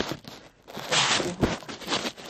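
A rustling, scraping noise with a soft thump about one and a half seconds in.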